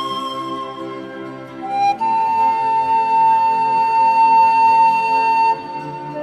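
Instrumental music led by a flute over held lower accompaniment. About two seconds in, the melody slides up to a high note that is held long and loud, then drops back near the end.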